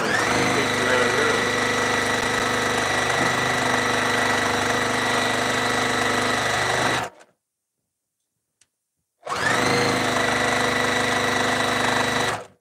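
Juki TL-2010Q straight-stitch sewing machine stitching a seam in quilt pieces at steady high speed, its motor whining up as it starts. It stops for about two seconds partway through, then runs again.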